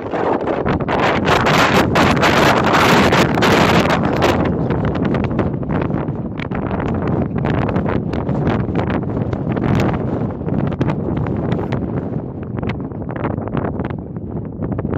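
Strong wind buffeting the microphone in gusts, heaviest in the first few seconds and then easing a little.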